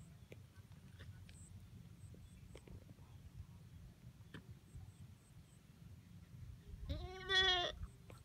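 A goat bleating once near the end, a short, quavering call lasting under a second.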